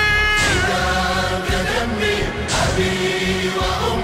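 Voices singing an Arabic Shia mourning elegy for Imam Husayn in a choir-like manner, holding long notes that waver in pitch.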